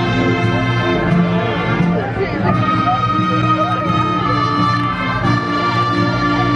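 Band music with long held notes, heard over the chatter of a crowd.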